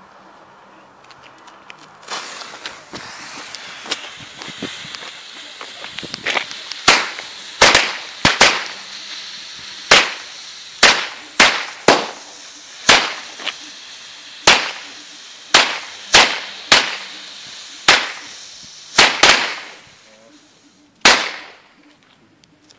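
Weco 20-cracker Chinese firecracker chain going off: a fuse hisses for a few seconds, then the crackers bang one at a time, about twenty sharp bangs at uneven intervals of half a second to a second over some fourteen seconds, each with a short trailing echo. It is a slow-firing chain, not a rapid rattle.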